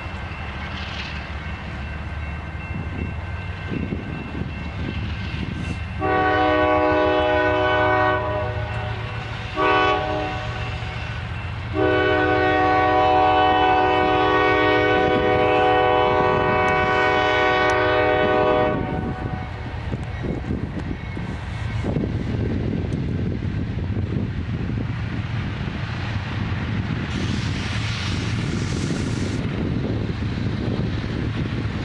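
A CSX freight locomotive's air horn sounds three times: a long blast, a short one, then a very long one of about seven seconds. This is the warning a train gives as it nears a road crossing. Under the horn the train's low rumble grows louder as it comes closer.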